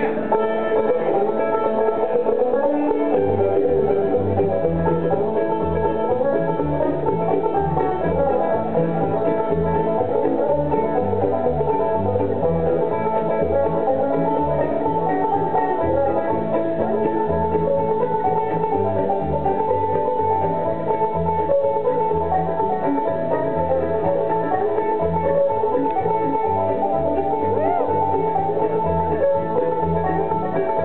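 Live bluegrass band playing a tune on banjo, fiddle, mandolin, acoustic guitar and upright bass, the bass coming in about two seconds in on a steady beat.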